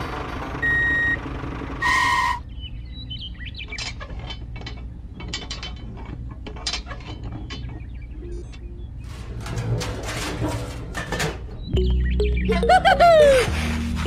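Light clicks and taps of small metal and plastic parts being handled on a miniature seeder. They are mixed with a short electronic beep near the start, background music and warbling chirp-like sound effects near the end.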